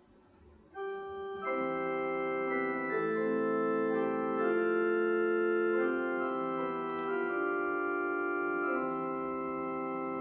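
Organ-voiced keyboard playing slow, sustained chords as the instrumental introduction to a sung responsorial psalm, coming in about a second in. The notes hold steady without fading, and the chords change every second or two.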